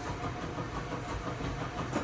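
A steady low machine hum with faint background noise.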